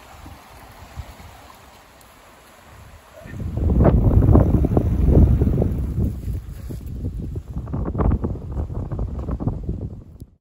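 Wind buffeting the microphone outdoors, loud and gusting from about three seconds in, over a fainter low rush of moving water.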